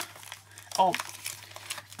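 A small cardboard box and plastic packaging being handled on a table: light rustling and crinkling, with a few faint ticks near the end.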